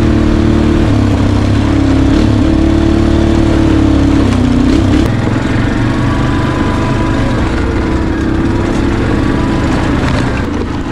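A small engine running steadily, its pitch wavering up and down. The sound changes about halfway through.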